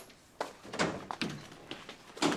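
An interior glass-panelled wooden door being opened by hand: a few short knocks and clicks, the loudest a dull thunk a little under a second in.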